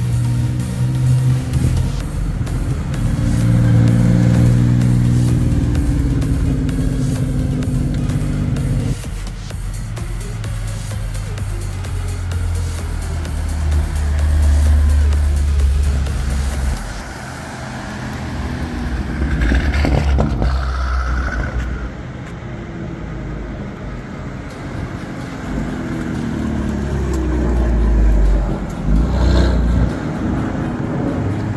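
Cars pulling away one after another, their engines running and revving as they pass.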